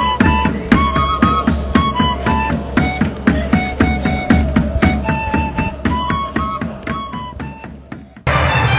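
Background music with a fast, steady beat of about four strokes a second and a high melody line over it, fading out over the last few seconds.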